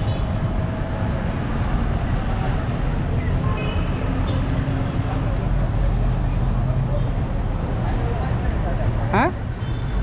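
Street traffic at a busy intersection: a steady low rumble of passing vehicles, with a brief rising squeal about nine seconds in.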